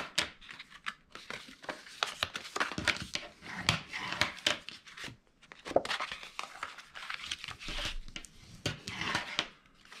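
Poster board being folded along its score lines and burnished with a bone folder: irregular scraping strokes and paper rustles, with a brief pause about halfway.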